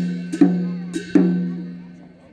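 Folk dance accompaniment: a ringing, pitched percussion instrument struck at a steady beat, about two strokes a second, each stroke ringing on. The last stroke comes just over a second in and fades away, ending the playing.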